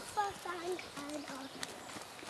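A pony's hoofbeats on a soft arena surface as it trots on a lunge line, with a child's voice speaking faintly over them.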